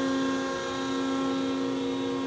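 Electric motors and hydraulic pumps of a hydraulically operated rod pumping unit running with a steady hum of several held tones, as the unit drives its piston to a commanded position.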